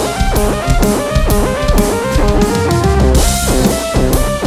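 Instrumental progressive rock passage: quick rising and falling guitar runs over a full rock drum kit, with a crash cymbal about three seconds in.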